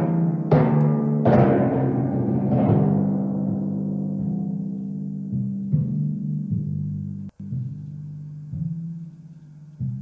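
Copper-bowled timpani struck with felt mallets: three loud strokes in the first second and a half, the drums' low pitched tones ringing on and slowly fading, then a few softer, sparser strokes through the second half as the solo winds down.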